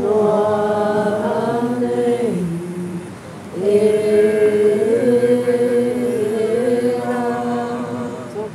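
Voices singing a Māori waiata together in long held notes: one phrase in the first two and a half seconds, then, after a short break, a second, longer phrase.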